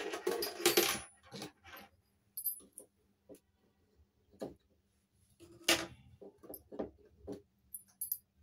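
Handling of a small metal toy locker and its keys. There is a dense rattle as the locker is set down at the start, then scattered light clicks and metallic clinks as scissors cut the string tying the keys to the handle. The sharpest click comes a little before six seconds in.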